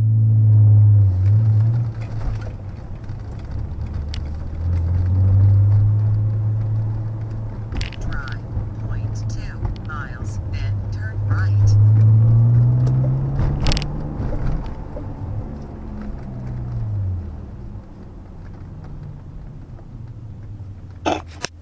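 Car engine and road drone heard from inside the cabin while driving, the engine note rising as the car speeds up partway through and falling again later. A sharp click stands out about fourteen seconds in.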